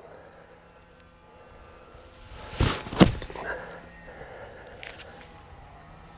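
Bunker splash shot with a 58-degree wedge: two sudden sounds close together about two and a half seconds in, the club swinging down and striking the sand behind the ball, the second the louder and sharper.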